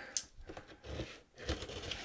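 A cardboard shipping box being opened by hand: a few short scrapes and rustles of cardboard.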